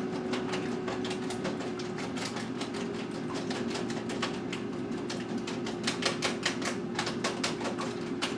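Food frying in a pan on the stove, with continuous irregular crackling and popping that gets sharper and louder about six seconds in, over a steady low hum.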